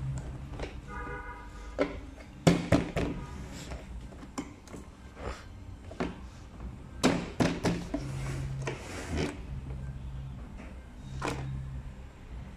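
Hard plastic parts of a kitchen rack knocking and clicking together as a white plastic corner post is pushed into a red plastic basket: a string of sharp knocks, the loudest about two and a half seconds in and around seven seconds in.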